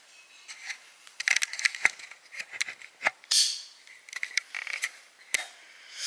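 Handling noise from the recording phone or camera as it is picked up and moved close to the microphone: a scatter of clicks, taps and small knocks, with a few short rustles.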